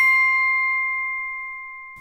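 A single bell-like chime, struck just before, rings on as a clear steady tone that slowly fades. Its brighter overtones die away within the first second.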